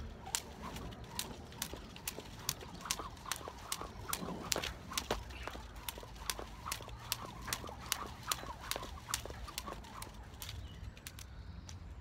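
Skipping rope striking the paving in a steady rhythm, about two to three sharp slaps a second, as it is swung through jumps and crossovers. The slaps stop shortly before the end.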